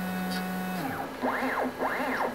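Stepper-motor drive of a small milling machine moving the table: a steady low hum that stops just under a second in, then two whines that rise and fall in pitch as the axis speeds up and slows down.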